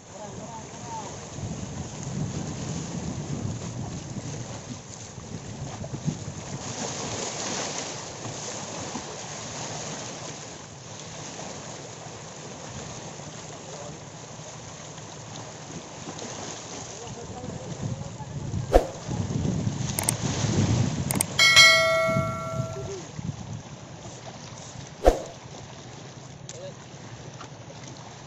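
Small waves washing against shore rocks, with wind buffeting the microphone. A few sharp clicks late on, and a brief ringing tone about three-quarters of the way through.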